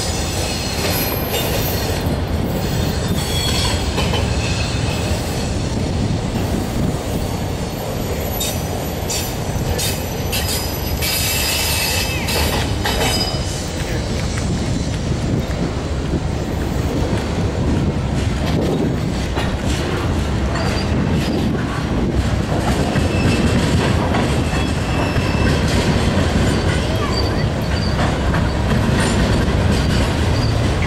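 Freight train of autorack cars rolling past at close range: a steady rumble of steel wheels on the rails, with high-pitched wheel squeal on and off through the first half.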